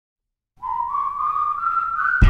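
Whistling that begins about half a second in: one long note sliding slowly upward, the whistled intro of a song before the band comes in.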